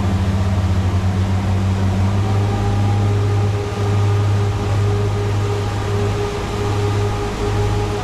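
Motorboat engine running at speed, a loud steady low drone with a slight throb in the first couple of seconds, over the rush of wake water and wind.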